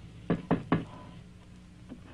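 Knocking on a door: three quick knocks in the first second, then a single fainter knock near the end.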